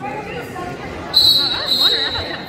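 A referee's whistle blown once, about a second in, a loud, steady, shrill blast that stops the wrestling action. Spectators' voices call out in the gym around it.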